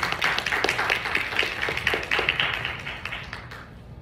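Audience applauding: a round of clapping from a small crowd that dies away near the end.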